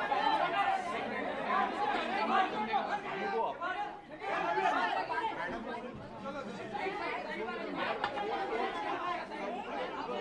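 Crowd chatter: many voices talking over one another in a packed room.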